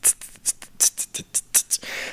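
A person imitating hi-hats with the mouth, beatbox-style: a quick, even run of short hissy 'ts' sounds, several a second.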